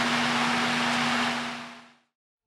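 Steady room noise in a small studio: an even hiss with a steady low hum, fading out over the last half second.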